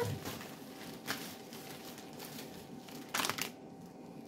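Product packaging being handled on a table: a faint rustle about a second in, then a louder crinkle lasting about half a second near the end.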